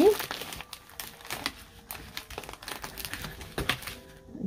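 Paper and cardstock craft pieces rustling and crinkling as hands shift them around on a craft mat, with a few light clicks and taps scattered through.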